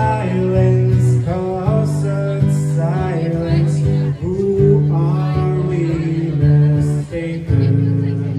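Acoustic guitar strummed in steady chords that change about every second, with a man singing a melody over them into a microphone: a live cover performance.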